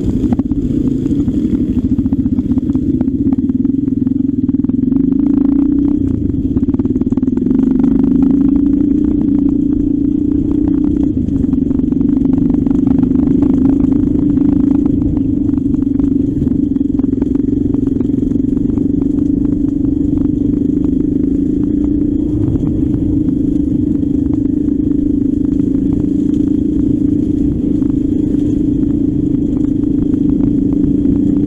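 Trail motorcycle engine running steadily while riding along a rough dirt track, its note wavering only slightly.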